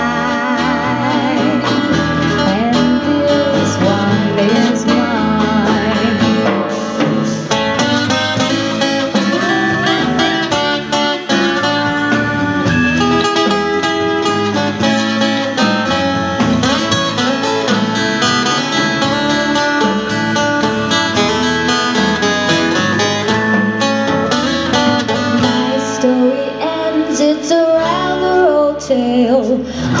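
Live band playing a song with acoustic guitar, electric bass and drums in an instrumental stretch between sung verses; a lead line wavers in pitch near the start, and the low end thins out near the end.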